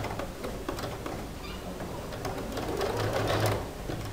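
Domestic sewing machine stitching a short, shortened-length seam around the end of a slit, its needle ticking steadily with a low motor hum that swells about three seconds in.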